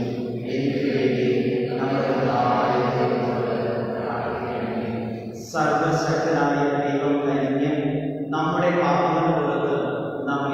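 A man's voice chanting a sung liturgical prayer of the Mass in long, held phrases, with short breaths about five and a half and about eight seconds in.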